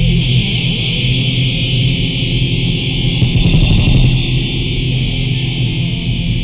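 A band playing thrash/death metal on electric guitars, loud and steady, with the lo-fi sound of a home recording made on a four-track cassette recorder.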